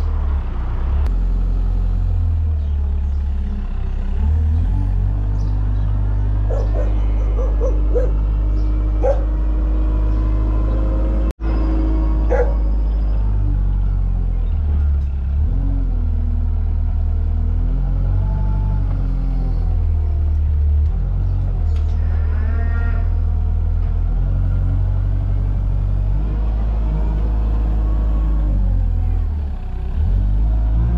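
Compact wheel loader's diesel engine running close by, its speed rising and falling as the loader lifts and carries straw bales.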